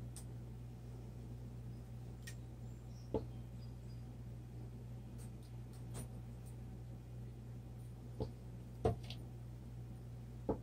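Quiet room with a steady low hum and a few faint, scattered taps and clicks from hands handling a painting canvas and a plastic squeeze bottle of acrylic paint.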